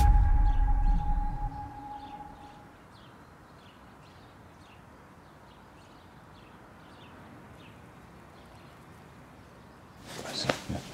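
A deep boom with a held tone, a transition hit, fades out over the first two seconds. Then faint outdoor ambience follows, with soft high chirps repeating a little under twice a second.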